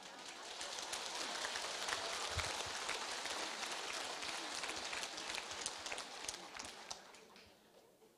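Audience applauding: dense clapping that swells over the first second, holds, then thins out and stops about seven seconds in.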